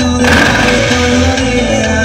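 Loud music with a regular low beat and held tones. A burst of hiss starts about a quarter second in and fades over about a second.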